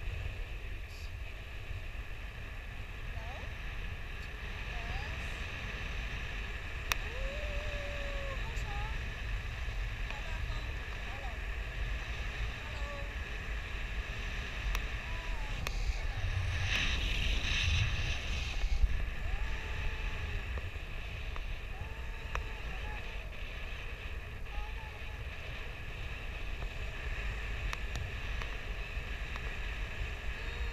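Wind of paraglider flight rushing over an action camera's microphone: a steady low rumble that grows louder for a few seconds past the middle.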